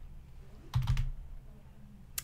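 Computer keyboard keystrokes: a quick cluster of two or three clicks about a second in, then only a faint steady hum.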